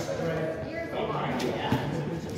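People talking, with one sharp click about three-quarters of the way through.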